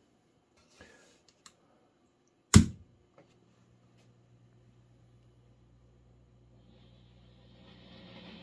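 1967 Fender Bandmaster AB763 tube amplifier head: a sharp click about two and a half seconds in, then a steady low mains hum with faint hiss that slowly builds as the amp comes up.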